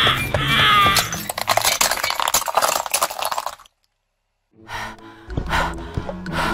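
A short cartoon voice effect with a wavering, squeaky pitch. Then a car tyre crushes painted dinosaur figurines: a dense crackling and crunching of breaking pieces for about two and a half seconds, which cuts off suddenly. After a moment of silence, music with a beat comes in near the end.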